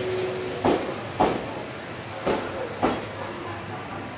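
Electric commuter train pulling slowly out of the station. Its wheels knock over a rail joint in two pairs of clacks, over a steady running hiss that fades near the end.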